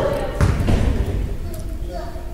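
A basketball bounces twice in quick succession on a hardwood gym floor about half a second in: a free-throw shooter dribbling before the shot.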